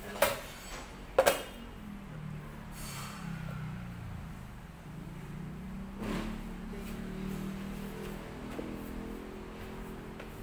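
Hands slapping: one sharp slap just after the start, then a quick double slap a second later, and a softer knock about six seconds in, over a low murmur of background voices.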